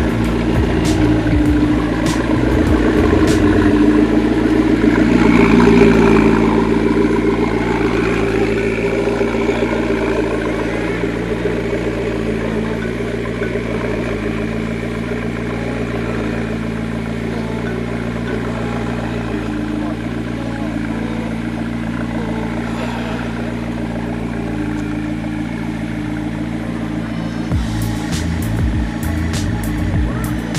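McLaren MP4-12C's twin-turbo V8 running at low revs as the car creeps slowly forward, swelling briefly about five seconds in before settling back to a steady, even idle.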